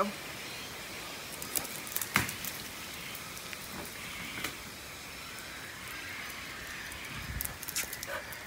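Steady hiss of rain falling on wet brick paving, with a few sharp knocks about two seconds in and a low thump near the end.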